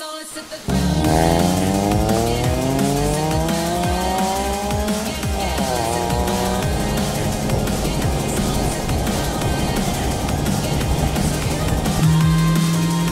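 Car engine accelerating hard, its pitch climbing for about four seconds, then dropping at a gear change about five seconds in, and running on under load with road and wind noise.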